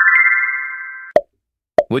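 Quiz-show sound effect: a quick rising run of chime notes that rings on and fades out about a second in. A short pop follows, and another comes just before the end.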